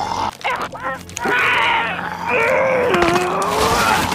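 A wounded animated character letting out a long, strained grunting cry of pain that falls in pitch, after a few sharp knocks in the first second.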